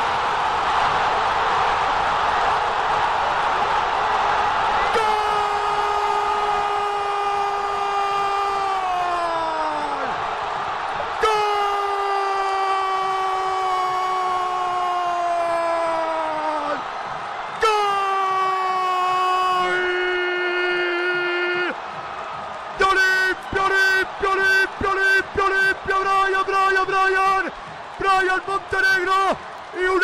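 A radio football commentator's drawn-out goal cry, 'gooool'. It comes as three long held shouts of several seconds each, every one sliding down in pitch at its end. These are followed by a quick run of short repeated shouts. A crowd roar is heard mainly in the first few seconds.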